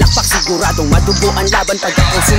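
Hip hop music: a Tagalog rap vocal over a beat with a deep bass line.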